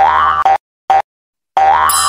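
Cartoon 'boing' sound effects of an animated logo: a springy pitched bounce that rises at the start, two short blips, then a longer rising boing. A bright shimmering burst comes in just before the end.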